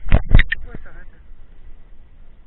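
Mountain bike passing close by at speed on a leafy dirt trail: three loud knocks and rattles within the first half-second, then a fainter one.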